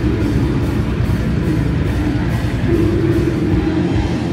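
Death metal band playing live: distorted electric guitars and drums in a dense, loud wall of sound with a steady drum beat.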